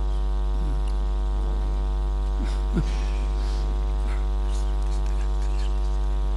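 Steady electrical mains hum in the microphone and sound system, a low buzz with a long series of evenly spaced overtones, holding at one level throughout. A faint short sound comes just before the middle.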